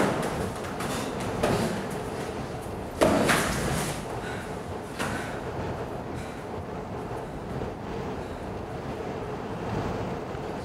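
A few sudden thuds from a staged fistfight, the loudest about three seconds in, then a steady background hiss.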